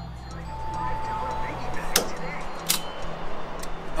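Gas station fuel pump running while fuel flows through the nozzle, a steady low hum that shifts a little under two seconds in, followed by two sharp clicks.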